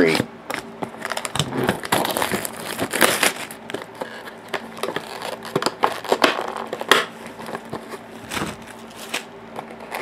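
Cellophane shrink-wrap being torn and crumpled off a trading-card hobby box: a run of irregular crackles and rustles.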